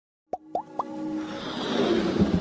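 Animated-logo sound effects: three quick rising plops about a quarter-second apart, then a swelling whoosh that builds under electronic music.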